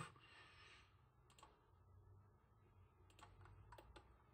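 Near silence: quiet room tone with a few faint clicks from computer controls, one about a second and a half in and a small cluster near the end.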